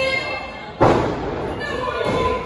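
A single heavy thud on the wrestling ring about a second in, a wrestler's body hitting the mat, echoing in the hall. Voices and crowd chatter run underneath.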